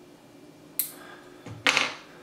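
A single short, sharp snip of line clippers cutting the tag end of fishing line off a freshly tied knot, about a second in.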